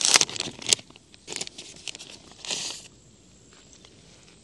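Clear plastic packaging bag crinkling and rustling as a small drone is pulled out of it, in a few short bursts over the first three seconds, the loudest right at the start.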